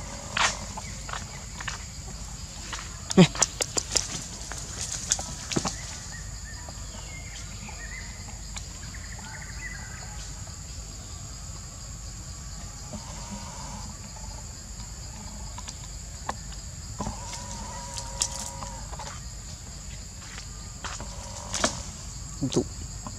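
Steady high-pitched drone of forest insects, with scattered sharp clicks and rustles in the first few seconds and again near the end.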